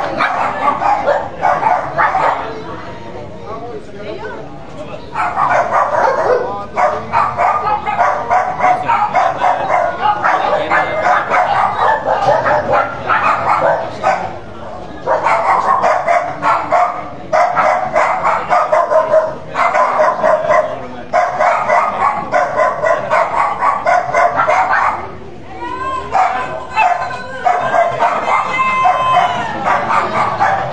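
A dog barking again and again in long runs with short pauses, with people talking under it.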